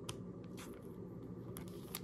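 Faint handling of trading cards and a thin plastic sleeve: a few soft clicks and rustles over a low, steady room hum.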